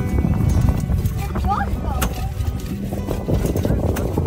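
Low steady rumble of a fishing boat's motor and wind, with music and indistinct voices over it.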